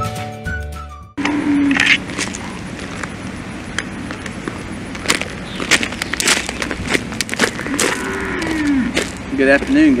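A short music sting ends about a second in, followed by outdoor microphone ambience: a steady noise haze with scattered sharp clicks and knocks. A man's voice begins near the end.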